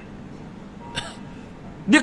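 A pause in the talk with faint room tone, broken about a second in by one short, sharp mouth or throat sound close to the microphone, like a hiccup; a man's voice starts again near the end.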